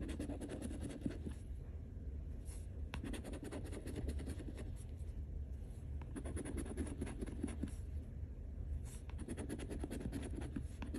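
Edge of a metal challenge coin scraping the coating off a scratch-off lottery ticket in quick, repeated back-and-forth strokes.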